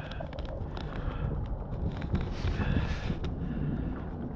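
Wind rumbling on the microphone, a steady low noise with a few faint clicks.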